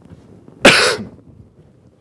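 A man coughs once: a single loud, short burst a little over half a second in.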